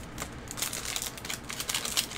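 Foil wrapper of a Panini basketball trading-card pack crinkling as gloved hands open it: a quick, irregular run of small crackles.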